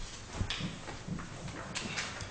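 A few soft knocks against quiet room noise, the clearest about half a second in.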